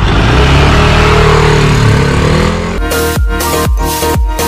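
Yamaha Cygnus 125 scooter's single-cylinder four-stroke engine revving up, its pitch rising. About three seconds in, it gives way to electronic dance music with a steady beat.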